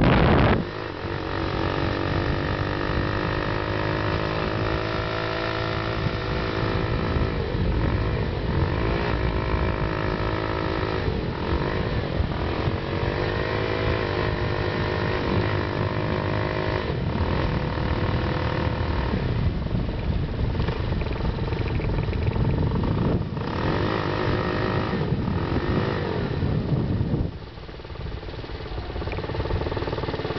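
Small four-stroke engine on a motorized bicycle running under load, its pitch rising and falling several times as it revs up through the gears of a three-speed shifter kit, with rushing noise underneath. A brief loud rush of noise at the very start; near the end the engine drops back as the bike slows.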